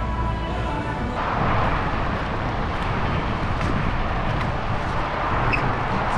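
Music playing, with held steady tones for about the first second, then a dense, even wash of noise for the rest.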